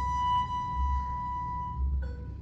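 Kamancheh, the Persian spiked fiddle, bowed on one long held high note that fades out near the end, closing the piece.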